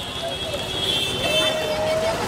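A car moving slowly through a noisy street crowd: engine and traffic noise under people's voices calling out, with one long drawn-out call near the end.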